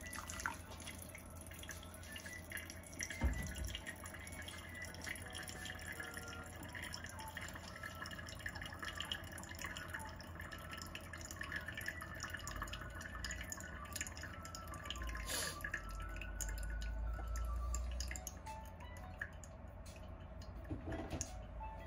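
Hot water poured from a gooseneck kettle onto sencha in a paper-lined tea dripper, then green tea dripping through the paper filter into the server below. There is a single thump about three seconds in.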